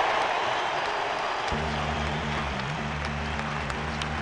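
Ballpark crowd cheering and applauding, loudest at the start and easing off. About a second and a half in, low steady music comes in underneath.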